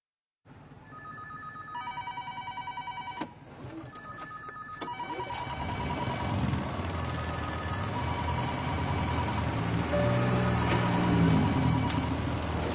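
Electronic ringing tones, starting about half a second in and repeating in short phrases on a few high pitches, some with a fast trill. A low rumble builds underneath from about halfway.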